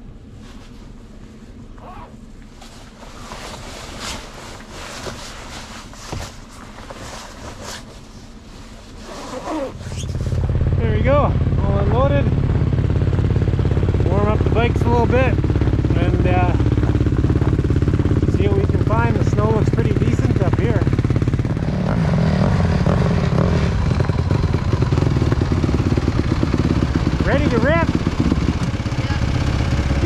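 Rustling of winter riding gear being pulled on, with scattered clicks. About ten seconds in, a much louder steady engine drone of a snow bike (a dirt bike on a ski and track) comes in, with short voice-like rises and falls in pitch over it.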